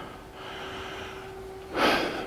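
A man breathing close to the microphone in a pause between sentences, ending in a sharp, louder inhale near the end; a faint steady hum sits underneath.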